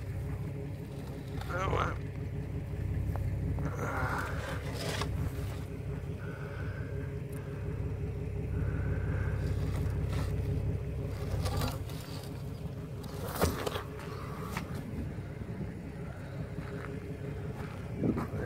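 Low, steady engine rumble of an idling vehicle that drops away about twelve seconds in, with occasional knocks and scrapes from the plywood release box being opened and tipped up.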